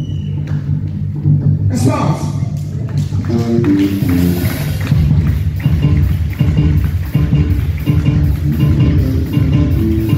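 Gospel band music led by a Roland XPS-10 keyboard playing piano and flute voices over a steady bass line, with drums and cymbals joining about two seconds in.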